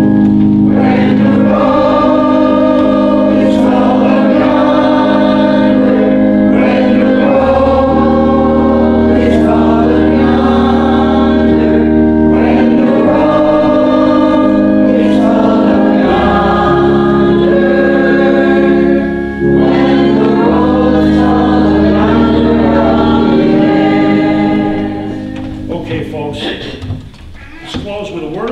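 A church congregation singing a hymn together over sustained accompaniment chords, in long held notes. The hymn comes to its end near the close.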